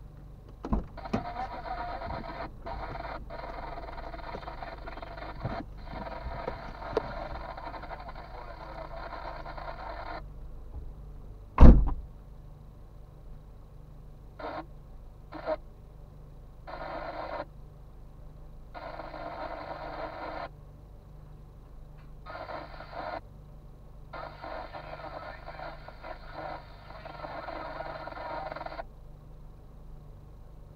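A car idling at a standstill, with one loud thump about twelve seconds in, as of a car door shutting. Stretches of hiss start and stop abruptly over the engine hum.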